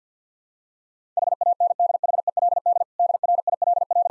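A Morse code sidetone, one steady mid-pitched beep keyed rapidly on and off at 50 words per minute, spelling "HANDHELD DRILL". It starts about a second in, with a short break between the two words.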